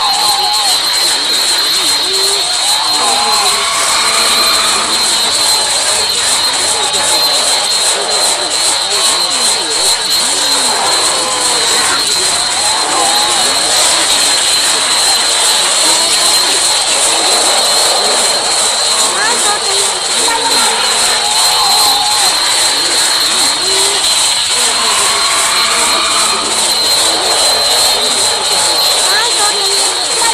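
Loud, harsh, noise-heavy cartoon soundtrack audio with a steady high whine running through it and warbling, voice-like fragments rising and falling over the top.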